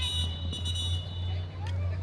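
Referee's whistle blown in one long steady blast that stops about a second and a half in, over faint voices and a low steady hum.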